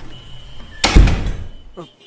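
A door slamming shut: one heavy, loud bang a little under a second in that dies away over about half a second.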